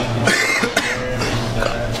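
Background music playing, with a man coughing.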